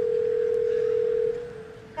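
Telephone ringback tone heard down the line of an outgoing call: one long, steady ring that drops sharply in level a little past a second in and trails off faintly.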